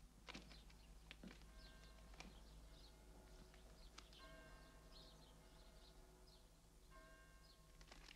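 Near silence: faint room ambience with a few distant bird chirps, soft sustained tones held for several seconds from about a second and a half in, and a few light clicks.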